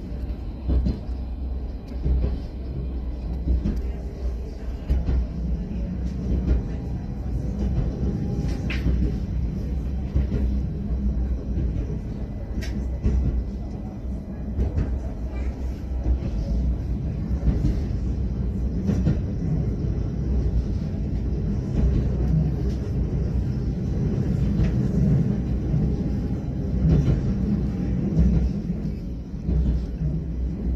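Low, steady rumble of a moving vehicle heard from on board, with a couple of faint sharp clicks in the middle.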